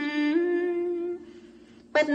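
A single voice intoning a Buddhist chant in long held notes that step up and down in pitch, breaking off a little over halfway through and starting again at the very end.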